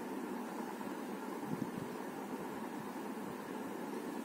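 Steady, even background hiss of room noise with no voice, with a faint brief blip about a second and a half in.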